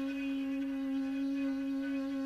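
One long held note of Minangkabau sirompak music, steady in pitch and without ornament.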